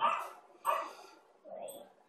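A dog barking twice, the barks about two thirds of a second apart.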